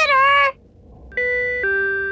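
A short, high cartoon voice exclamation, then about a second in a two-note 'ding-dong' doorbell chime: a higher note stepping down to a lower held note.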